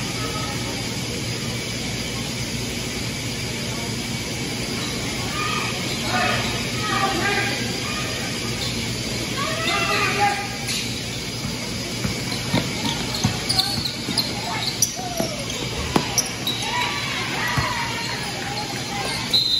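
Basketball bouncing on a hardwood gym floor and sneakers squeaking during play, over shouting voices. The ball bounces come as a run of sharp knocks in the second half.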